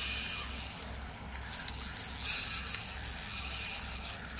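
Shimano Sedona 4500 spinning reel being cranked steadily under load as a hooked bonito is reeled in, its gears making a continuous mechanical whir with faint clicks.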